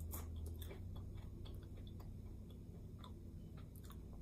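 A person chewing a mouthful of pan-fried blewit mushrooms: faint, soft mouth clicks and smacks, scattered irregularly over a low steady hum.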